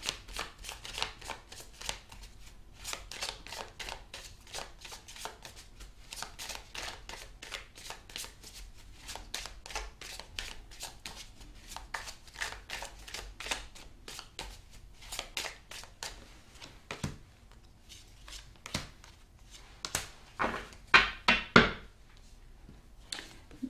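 A deck of tarot cards being shuffled by hand: a long run of quick papery flicks and riffles, thinning out for a few seconds and then coming in a louder flurry near the end.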